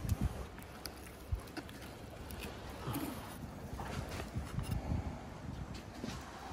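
Quiet handling of a raw fish fillet during sashimi preparation: scattered light taps and knocks over a steady low rumble.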